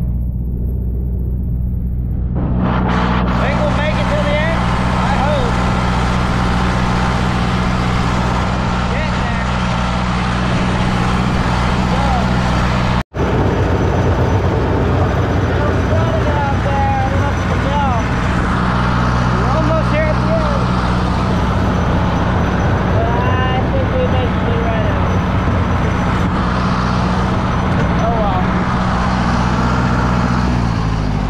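Deutz D 6006 tractor's air-cooled diesel engine running steadily under way, with a rougher, noisier layer joining about two and a half seconds in. Short pitched squeaks come and go over it, and the engine note drops at the very end.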